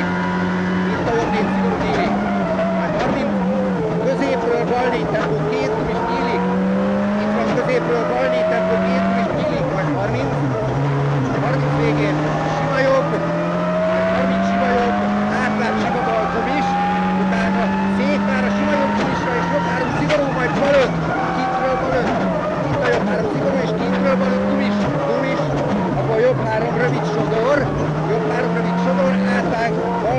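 Ford Focus WRC rally car's turbocharged 2.0-litre four-cylinder engine heard from inside the cabin at racing speed, its revs climbing through each gear and dropping back at every shift, again and again, over steady tyre and road noise.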